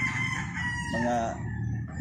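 A gamecock rooster crowing in the background: one drawn-out high call that fades out within the first second.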